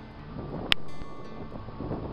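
Wind buffeting the microphone, building from about half a second in, over soft background music with low held notes. A single sharp click comes shortly after the wind picks up.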